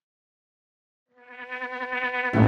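Silence, then about a second in a cartoon fly's buzzing fades in: one steady, even-pitched buzz that grows louder.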